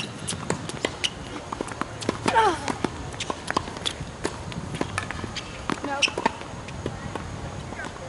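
Tennis rally on an outdoor hard court: a run of sharp knocks from racket strikes and ball bounces, with footsteps on the court.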